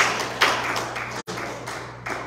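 A few sharp claps or taps, each ringing out in a reverberant hall, the two loudest about half a second apart at the start. The sound cuts out completely for an instant a little past the middle.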